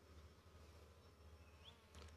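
Near silence: a faint steady low hum.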